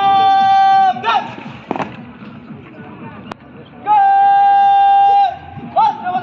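Long drawn-out shouted drill commands, two of them, each held about a second on one high, steady pitch and dropping off at the end. Between them comes a quieter stretch of murmur with a few knocks and a sharp click.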